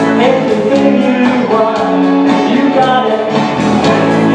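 A live rock band playing a song: electric guitar, electric bass and a Roland electronic drum kit over a backing track, with a steady beat.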